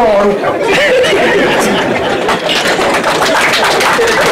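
A man laughing and talking into a microphone while an outdoor audience laughs and chatters.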